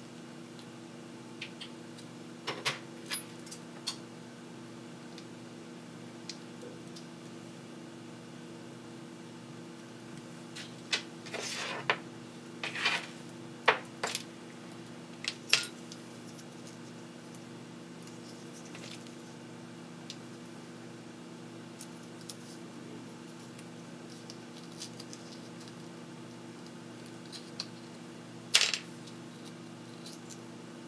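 Hands handling small electronic parts on a workbench: light clicks and rustles of plastic and metal, in short clusters a few seconds in, around the middle and near the end, over a steady low hum.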